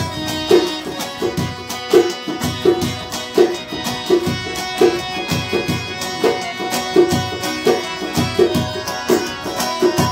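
Traditional Balochi folk music played on long-necked string instruments, with no singing. A strong low beat repeats about every 0.7 seconds, with quicker plucked strokes between the beats.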